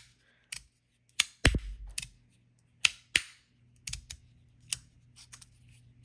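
Aluminium magnetic fidget slider clicking sharply as its strong magnets snap the sliding plates into place, in irregular clicks with the loudest about a second and a half in.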